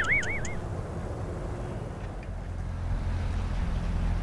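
Low, steady rumble of highway traffic that swells slightly toward the end. A brief warbling whistle is heard at the very start.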